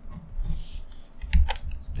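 Stylus tapping and scratching on a tablet screen as a few symbols are handwritten, with two sharp clicks about a second and a half in.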